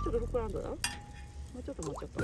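Charcoal fire in a metal fire pit crackling and hissing under marshmallows being toasted, with a sharp pop about a second in.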